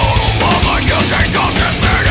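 Nu metal/metalcore song: distorted electric guitars over fast, dense drumming, loud and continuous.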